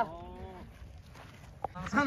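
A cow moos once, a single call that sinks slightly in pitch and fades out within the first second.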